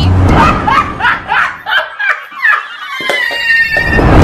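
A person laughing in short, rhythmic bursts, about three a second. In the last second a steady high tone falls slowly in pitch.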